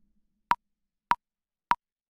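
Pro Tools metronome click counting in before recording: three short, evenly spaced clicks at one pitch, a little over half a second apart.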